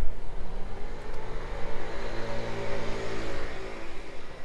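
A car driving past on the street: engine hum and tyre noise build up, peak in the middle, and fade away near the end.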